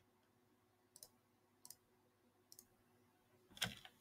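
Near silence with three faint, short clicks spaced under a second apart, typical of a computer mouse or keyboard being used at a desk; a brief faint noise comes just before the end.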